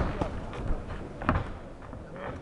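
Boxing-glove punches landing in a heavyweight bout: three thuds, the first and loudest right at the start, the others about two-thirds of a second and a second and a quarter in.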